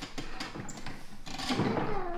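A run of small, sharp clicks and knocks, mostly in the first second, from a child's plastic toy kitchen being handled: a toy door being opened and a small metal toy pot moved about.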